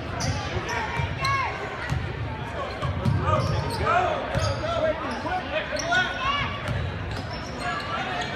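Basketball being dribbled on a hardwood gym floor, a series of short bounces that echo in the hall, over the chatter of a crowd in the bleachers.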